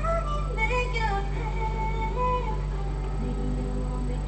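Female vocalist singing in a recording studio, holding notes and stepping between pitches in a slow melodic line.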